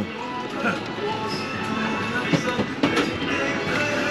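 Music playing amid the steady din of an amusement arcade, with faint voices in the background.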